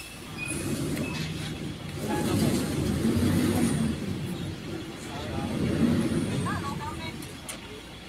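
Diesel engine of a tractor-trailer truck rumbling as it manoeuvres, swelling louder twice as the driver pulls the rig forward.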